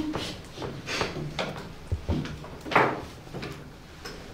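Meeting-room background in a pause between speakers: faint murmuring voices with a few knocks and rustles, the loudest a short scrape or rustle about three seconds in.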